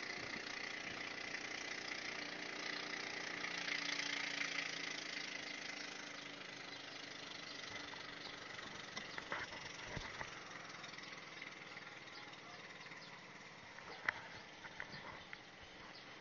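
Distant motorboat engine running steadily, swelling about four seconds in and then fading away. A few light clicks and taps near the end come from the camera being handled.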